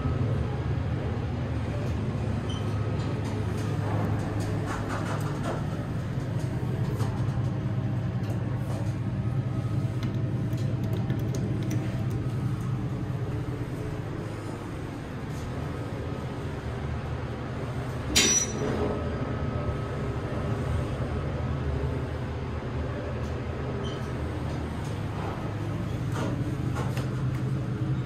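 Montgomery traction elevator car in motion, heard from inside the cab as a steady low hum and rumble. One sharp click comes about two-thirds of the way through.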